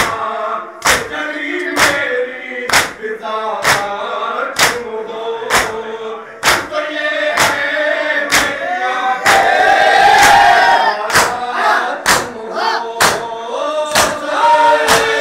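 A group of men chanting a noha (mourning lament) in unison, led by a reciter on a microphone, over rhythmic matam: open-handed chest-beating in strokes about once a second. About nine seconds in the voices swell into a louder collective cry for a couple of seconds.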